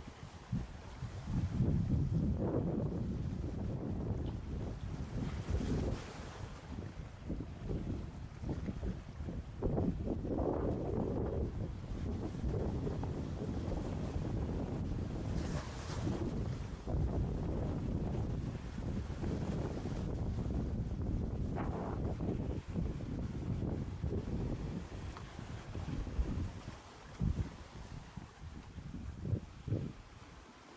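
Wind buffeting the microphone in gusts, with small waves washing over the shoreline rocks.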